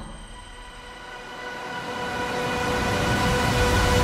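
Trailer sound design: a rushing, rumbling riser that builds steadily louder over a held musical drone, then cuts off abruptly at the end.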